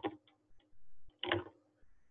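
Soft clicking at a computer, mostly a short cluster of clicks about a second and a half in, with a fainter click earlier.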